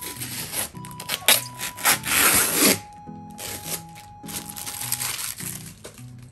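Clear plastic parts of a new automatic cat water fountain being handled and rubbed against each other during unpacking, in several short rustling bursts, the loudest about two seconds in, over light background music.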